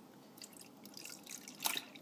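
Chicken stock poured from a jug into a stainless steel thermo-cooker bowl already holding liquid: faint drips and splashes at first, then a louder splash about one and a half seconds in as the pour gets going.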